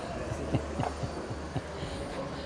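Steady low hum of a large exhibition hall's background, with faint soft thuds a few times a second as the camera is carried along on foot.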